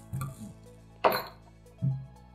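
A glass beer bottle being opened with a bottle opener and set down: a sharp clink from the metal cap about a second in, then a dull knock of the bottle on a wooden table near the end. Quiet background music plays underneath.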